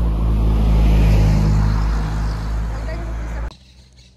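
Low engine rumble of a motor vehicle running close by, strongest about a second in and easing off before it cuts off suddenly near the end.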